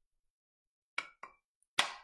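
Hand-held paper punch clicking as it is squeezed to punch a small ear shape out of a cardstock strip: two quick clicks about a second in, then a louder click near the end.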